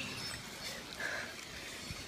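Faint, steady background noise with no distinct sound event.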